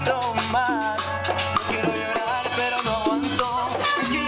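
A live Latin dance band playing salsa, with hand percussion, a steady bass line and a wavering lead melody.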